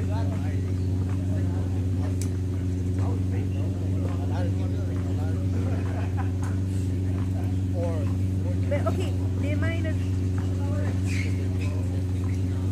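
A steady low machine hum runs under distant voices and shouts from people on a basketball court. A few sharp knocks cut through.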